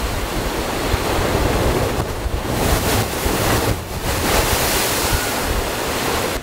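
Sea waves crashing into a rocky cliff inlet and washing back out, the surf noise swelling twice with a short dip between. Wind buffets the microphone.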